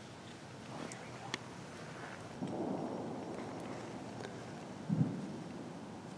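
Quiet handling sounds: two sharp clicks about a second in, a rustle, then a single muffled thump about five seconds in.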